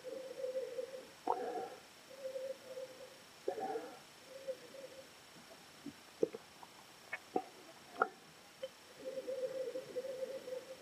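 Nosing a red wine: several slow sniffs into the bowl of a wine glass, each carrying a hollow, steady hum. Partway through the sniffing pauses and a few faint clicks are heard, then the sniffing resumes near the end.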